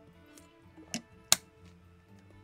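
Soft background music under a few short, sharp clicks from a person drinking from a bottle and handling it; the loudest click comes about a second and a third in.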